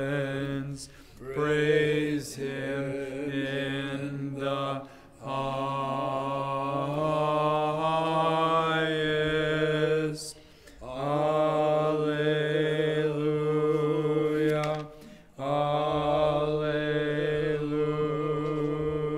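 Orthodox liturgical chant sung in long sustained phrases, with a low note held under a moving melody. The singing breaks off in short pauses about every four to five seconds.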